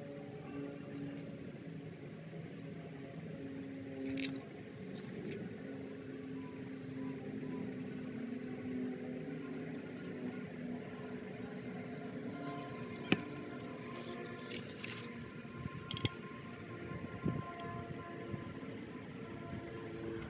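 A few light clicks and taps as a primer dauber is worked against PVC fittings and the primer can, the sharpest about two-thirds of the way in. Between them there is a faint steady background of held low tones and a high, evenly repeating chirring.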